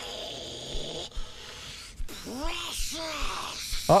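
Gollum's voice from a film clip: two short rising-and-falling calls in quick succession a little over two seconds in, over a faint low background.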